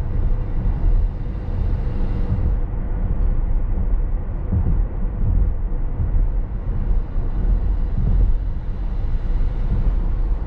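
Steady low tyre and road rumble inside the cabin of an electric Tesla Model S Plaid cruising at about 47 mph.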